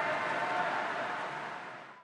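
Steady background noise of an indoor swimming pool hall, an even hum with a few faint held tones, fading out gradually toward the end.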